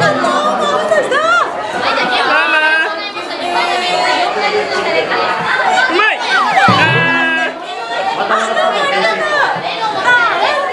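Several people's voices talking and exclaiming over each other, with music in the background. There are sharp falling-pitch cries just before the start and again about six and a half seconds in.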